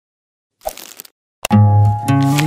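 Animated logo sting: a brief crackling swish about half a second in, a sharp click, then a plucked guitar chord that starts in the last half second and rings on.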